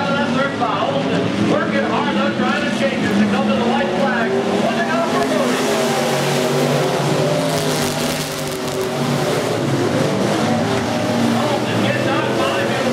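Several dirt-track sport mod race cars' V8 engines running hard as the pack races around the oval, their pitch rising and falling through the straights and turns, with voices mixed in.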